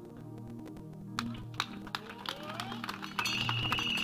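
Soft background music of sustained low chords, with a few faint taps. A steady high note comes in about three seconds in.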